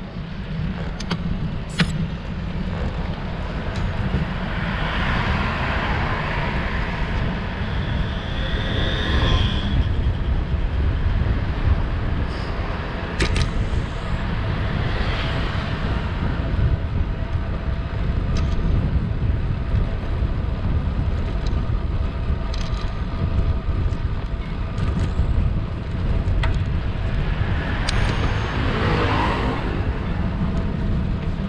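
Wind buffeting the microphone of a camera riding along on a road bicycle, a constant low rumble. Motor vehicles pass, one swelling and fading between about four and ten seconds in and another near the end.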